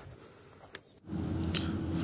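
Crickets chirping in a steady, high-pitched trill, faint at first. About a second in it abruptly becomes louder, with a low hum underneath.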